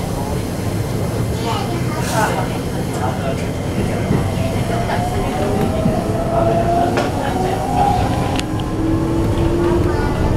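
Interior running sound of a Keikyu New 1000 series train: the Toyo IGBT-VVVF inverter whines over the rumble of the wheels and rises in pitch as the train accelerates, with a second, lower tone coming in near the end.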